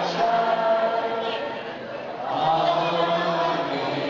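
A choir of mixed voices singing a hymn in unison, holding long sustained notes, with a brief softer moment around the middle.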